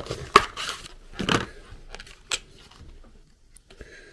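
Clear plastic packaging being handled and pried apart by hand: a sharp plastic click about a third of a second in, rustling crinkles, another click a little after two seconds and a few faint clicks near the end.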